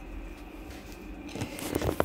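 Inflated latex balloons rubbing and bumping against each other as a cluster is picked up and handled: a rubbery rustle with a few squeaky ticks that starts about a second in and grows louder toward the end.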